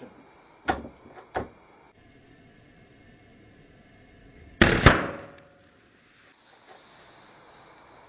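Two sharp clicks, then, about four and a half seconds in, a loud burst of under half a second as a pencil's graphite lead, fed 590 volts straight off a large transformer, arcs and explodes, splitting the pencil in half. The burst fades over about a second.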